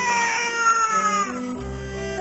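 A baby crying: one long wail that falls slightly in pitch and breaks off about a second and a half in, over background music.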